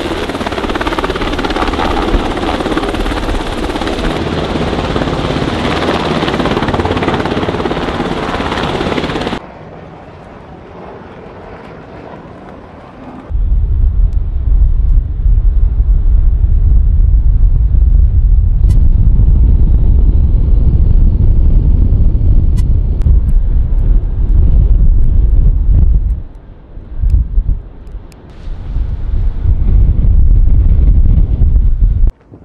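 MH-60 Seahawk helicopter hovering close by, its rotor and engine noise loud and steady, cutting off abruptly after about nine seconds. After a few quieter seconds, heavy wind buffeting on the microphone takes over, with a couple of brief lulls near the end.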